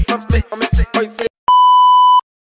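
Music with a heavy kick-drum beat cuts off abruptly about a second in. After a short gap, a loud, steady test-tone beep of the kind played with TV colour bars begins.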